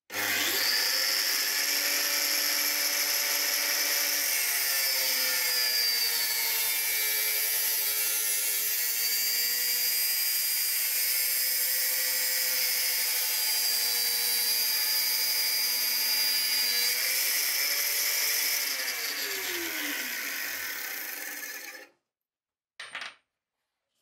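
Metabo angle grinder with a cut-off disc starting up and cutting through square steel tubing. It runs steadily, its pitch sagging for a moment about a third of the way in under the load of the cut. It is then switched off and winds down in falling pitch over about three seconds, and a brief knock follows near the end.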